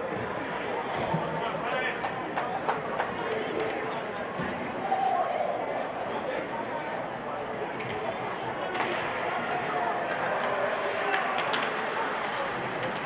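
Ice hockey rink sound: steady crowd chatter and players' voices with scattered sharp clacks of sticks and puck as a face-off is taken and play resumes.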